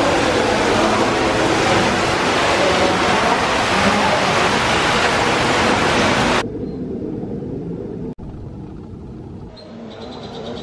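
Water rushing and splashing, echoing in a rock cave pool, loud and steady. About two-thirds of the way through it cuts off suddenly to a much quieter, duller wash of sound.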